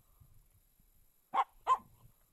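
Finnish Spitz giving two short, high barks about a second and a half in, a third of a second apart.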